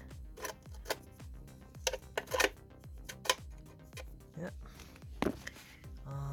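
Scattered light clicks and taps of a filter magnet and metal parts being handled and slotted into place inside a Ford 6DCT450 dual-clutch transmission.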